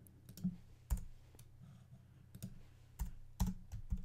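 Computer keyboard typing: about ten keystroke clicks, spaced irregularly and bunched near the end, over a steady low hum.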